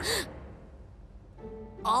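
Cartoon soundtrack: a short breathy gasp right at the start, then a quieter stretch of low background score, with a held musical chord coming in about a second and a half in.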